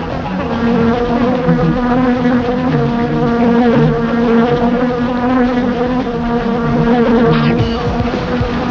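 A fly buzzing continuously, one droning tone that wavers slightly in pitch as the fly circles, as a cartoon sound effect. A brief higher-pitched sound comes in near the end.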